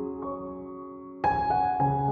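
Slow, soft background music on piano. Held notes die away, and a louder new chord comes in just past halfway.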